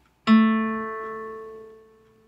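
Acoustic guitar playing a single note, A at the second fret of the G string, plucked about a quarter second in and left to ring and fade away. It is the A that completes the first octave of the A minor scale.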